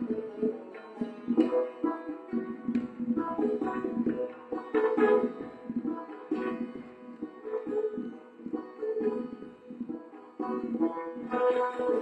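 Live Persian classical music: an instrumental passage of plucked long-necked lute with a frame drum (daf) beating beneath it. The playing grows louder near the end.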